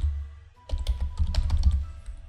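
Computer keyboard typing: a quick run of key clicks as a short word is typed, with background music underneath.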